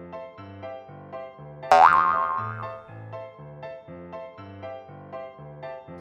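Cartoon background music with a steady, repeating bass line; about two seconds in, a loud cartoon 'boing' sound effect slides quickly up in pitch and then wobbles for about a second.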